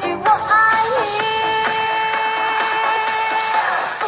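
Mandarin pop song playing, with one long held note sustained from about a second in until just before the end, over the backing track.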